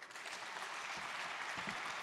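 Audience applauding in a large hall, the clapping starting right away and building slightly.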